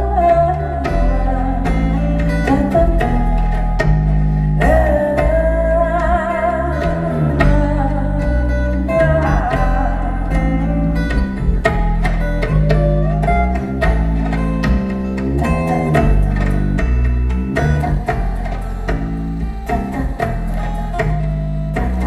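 Live acoustic band music: plucked acoustic guitar and bass-register guitar notes under a woman's voice singing in phrases with vibrato.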